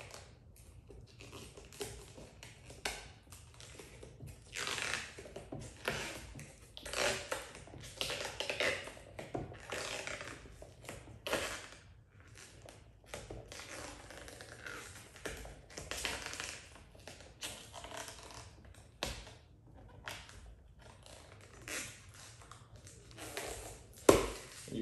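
Old SunTek clear paint protection film being peeled by hand off a car's mirror cap, crackling and crinkling in irregular bursts as it lifts from the heat-softened adhesive.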